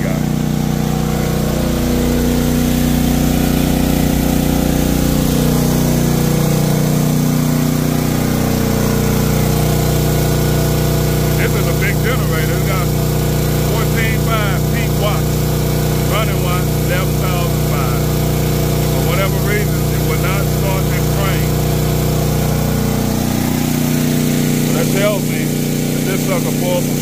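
Westinghouse 14,500-watt portable gasoline generator's engine running steadily under load while it powers a 4-ton Trane XR air-conditioner condenser, whose compressor and fan run with it. The hum shifts in pitch over the first several seconds and again near the end.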